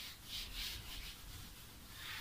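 Whiteboard eraser rubbing across a whiteboard in repeated back-and-forth strokes, wiping off marker writing.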